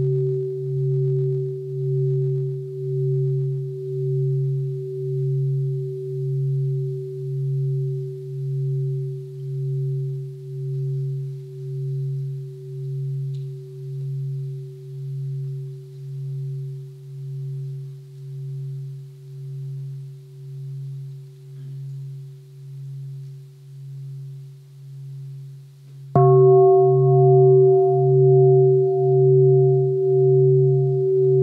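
Large meditation bowl bell ringing with a deep tone that pulses about once a second as it slowly fades. It is struck again near the end and rings out loud once more.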